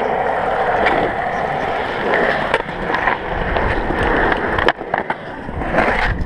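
Skateboard wheels rolling steadily over concrete, with a few sharp knocks spread through the roll.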